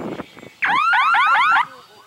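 Electronic warbling signal horn: a loud run of about eight quick rising-and-falling sweeps lasting about a second, starting just over half a second in. It is the F3B course signal sounded as the glider crosses a base line.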